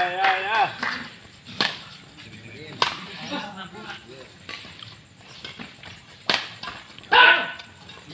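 Badminton rackets striking a shuttlecock during a rally: three sharp smacks, the last after a longer gap. Voices talking at the beginning and again near the end.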